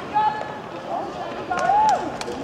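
Spectators yelling encouragement at the finish of an indoor 60 m sprint: loud shouted calls, one just after the start and a longer one near the end.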